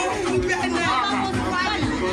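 Music with a steady bass beat, thumping about twice a second, with voices talking and chattering over it.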